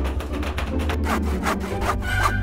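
A metal spoon scraping and scooping into a frosted sponge cake, a run of short rasping strokes that are clearest in the second half.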